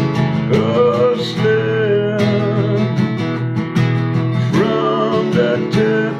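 Acoustic guitar with a capo, chords strummed in a steady rhythm. A wavering melody line rises in over the chords twice, about half a second in and again near the end.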